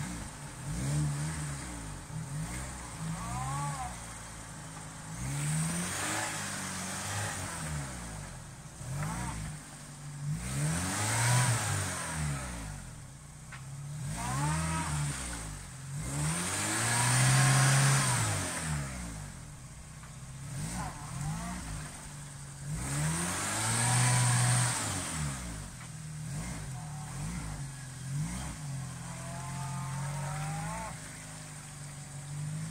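A Jeep Wrangler YJ's 2.5-litre four-cylinder engine working in low gear through a muddy rut, revving up and falling back four times. The loudest surge comes a little past the middle.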